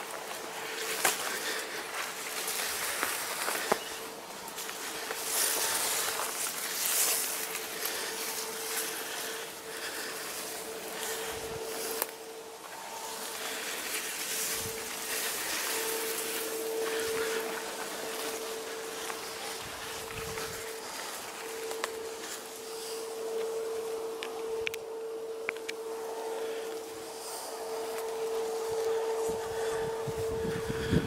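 Wind buffeting the microphone in gusts, with reeds and bushes rustling. A steady low hum runs underneath.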